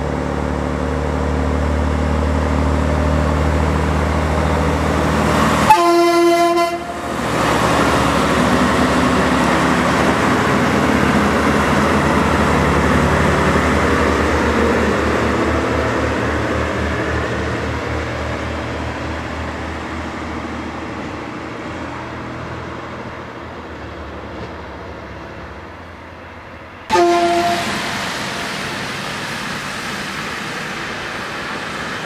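DR Class 772 'Ferkeltaxi' diesel railbus running past. It sounds its horn for about a second some six seconds in, and again briefly near the end. Between the two, the engine and running noise of the passing set slowly fade.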